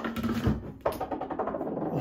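Roll of tape and taped-together plastic funnels rolling along wooden yardsticks: a fast clattering rattle with a steady low hum, and a dull knock about half a second in as the tape drops onto the table.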